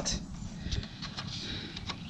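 A few faint clicks and rustles as a Massey Ferguson 35's tachometer cable is pulled out of its drive housing by hand.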